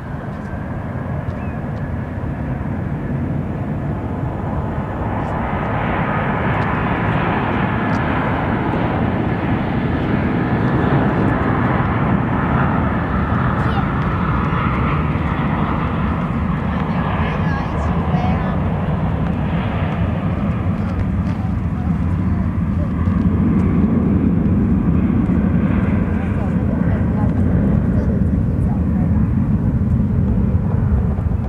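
Jet airliner engines at takeoff thrust, heard across open water: a broad, rumbling roar that builds over several seconds, then holds steady and swells again later on.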